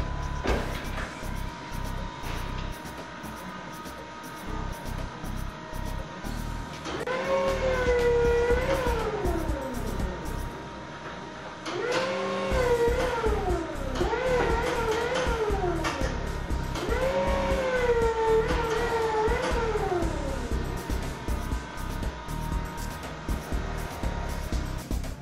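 Background music, with a forklift's motor whining up, holding and falling away three times, about seven, twelve and seventeen seconds in, each run lasting about three seconds.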